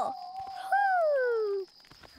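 A long, drawn-out owl "hoooo", voiced for a cartoon: held on one note, then sliding down in pitch, lasting about a second and a half.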